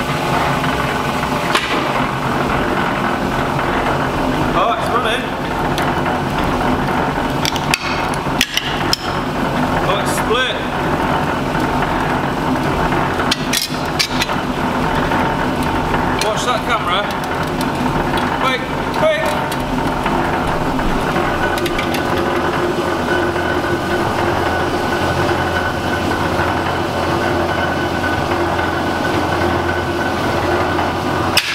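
Sheet-metal bending rolls running steadily with a machine hum as a half of aluminium scaffold tube about 2 mm thick is flattened between the rollers, with several sharp metallic knocks along the way.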